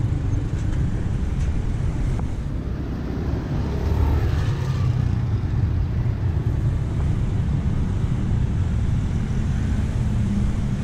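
Road traffic on a city street: cars and motorcycles driving past with a steady low rumble, swelling briefly about four seconds in as a vehicle goes by close.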